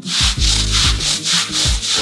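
Stiff hand scrub brush worked back and forth over a wet, soapy wool rug, about three rough scrubbing strokes a second. The brush is agitating laundry detergent into the pile to break the soil loose.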